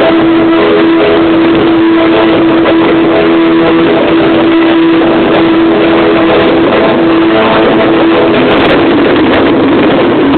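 Music from the display's loudspeakers, so loud that the recording is overloaded, with a long held note that ends about eight seconds in, over the rushing crackle of fireworks going off.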